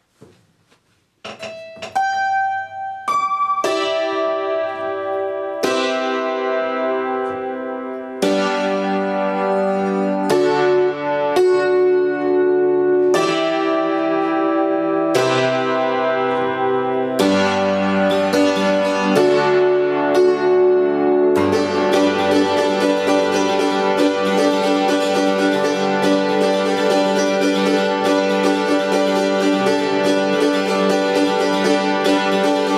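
Acoustic upright tack piano, thumbtacks pushed into its hammers, played by hand: starting about a second in with a few single rising notes, then held chords changing about every two seconds, and from about two-thirds of the way through, fast repeated chords.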